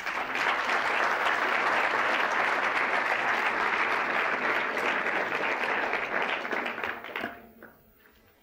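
A large audience applauding, starting at once and dying away about seven seconds in.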